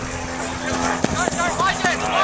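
Indistinct shouts and calls from players and sideline spectators across an open field, starting about a second in, over a steady low hum.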